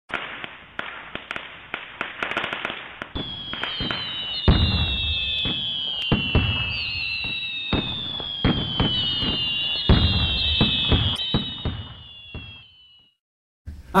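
Fireworks going off: many irregular sharp bangs and crackles, with falling whistle-like tones over the top, fading out about a second before the end.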